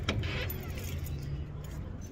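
A metal-framed glass entrance door pulled open by its handle: a sharp click of the latch right at the start and a second metallic rattle about half a second in, over a low steady hum that stops near the end.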